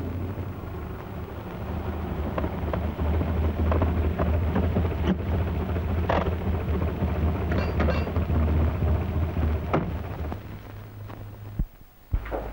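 A car engine idles with a steady low rumble, and there are a few sharp clunks, the car doors opening and shutting. The rumble stops a little before the end.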